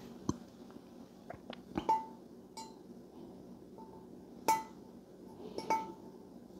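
Small metal parts clinking as they are handled, about five light clinks, each with a short metallic ring; the loudest comes about four and a half seconds in.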